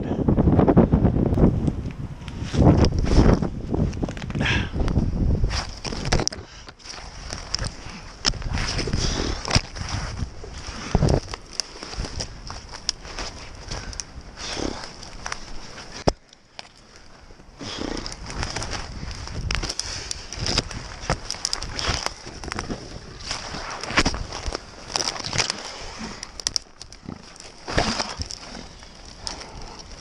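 Conifer branches rustling, cracking and scraping as a person climbs up through the tree with a camera strapped on, hands and body brushing bark and twigs in an uneven run of crackles and knocks. A brief lull a little past halfway.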